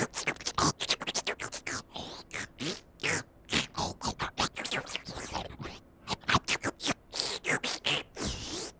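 Noo-Noo, the Teletubbies' vacuum-cleaner character, making its cartoon sucking and slurping noises: a rapid run of short sounds, some sliding up or down in pitch.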